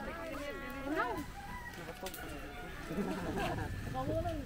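A rooster crowing once, a single call lasting about a second near the start.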